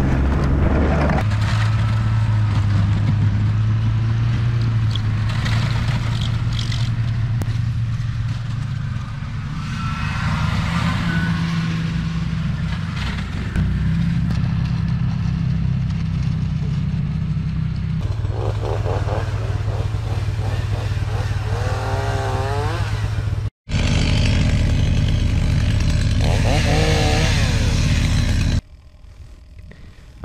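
Snowmobile engine running at speed, heard from the rider's seat: a steady drone whose pitch steps up and down as the throttle changes. Near the end it gives way to a much quieter stretch.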